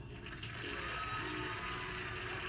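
Studio audience applauding steadily as a dating-show contestant is introduced, heard through a television's speaker.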